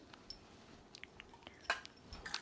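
Small plastic toys being handled: a few faint clicks and light knocks, with one sharper knock near the end.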